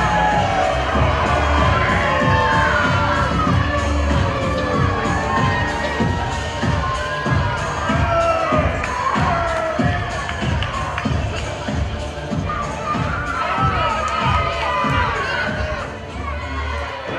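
Audience with many children cheering and shouting, a dense mass of high voices rising and falling over one another.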